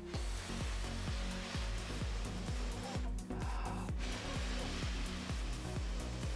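A person blowing long breaths into a smouldering tinder nest of char cloth to coax the ember into flame, with short breaks about three and four seconds in. Background music with a regular low beat runs underneath.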